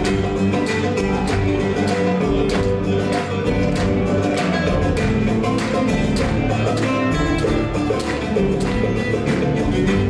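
Live Gnawa-fusion band playing an instrumental passage: a guembri (three-string Moroccan bass lute) plucks a deep, repeating bass line under drums and electric guitar, with a steady percussive beat.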